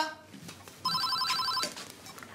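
Telephone ringing: one electronic trilling ring, a fast-pulsing two-note warble, lasting just under a second, starting about a second in.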